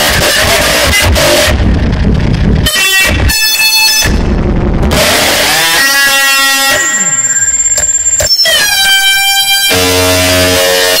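Loud harsh noise music: a dense wall of noise for the first few seconds, broken by abrupt cuts into harsh buzzing tones, several of which glide downward in pitch, with sudden stops and starts.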